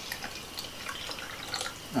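Cold coffee poured from a glass coffee-maker carafe into a glass jar: a quiet, steady trickle of liquid with small drips.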